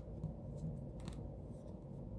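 Light handling of a stiff oracle card: a couple of faint clicks and rubs of card stock, over a low steady room hum.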